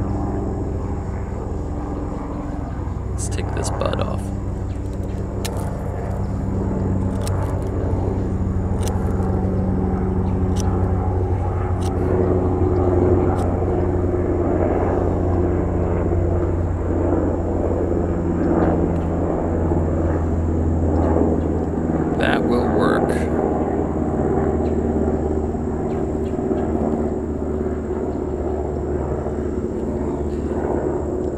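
A steady engine drone with slowly drifting pitch, the loudest thing throughout. Over it, a few light clicks and scrapes of a utility knife cutting into a graft's wood.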